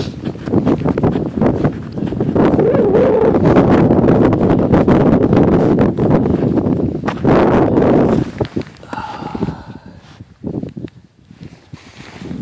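Footsteps crunching quickly through snow on the ice, dense and loud for about eight seconds, then dropping to a few scattered crunches and handling noises as the walking stops.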